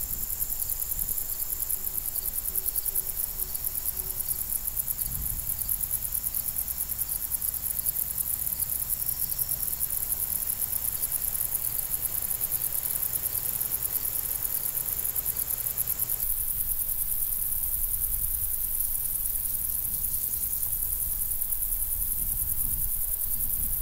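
Chorus of field insects such as crickets: a fast, continuous high trill with a second steady high note that drops out about two-thirds of the way in. A low steady rumble runs underneath.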